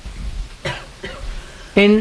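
A person coughs briefly, then a man's voice resumes speaking near the end.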